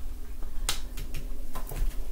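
Tarot card being laid down on a table: one sharp snap of the card a little under a second in, followed by several softer ticks as the cards are set and slid into place.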